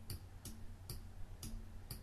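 Faint, evenly spaced ticks, about two a second, over a low steady hum.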